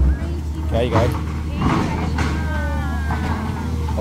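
Heavy diesel machinery running at a steady idle, a low even rumble, with people talking over it.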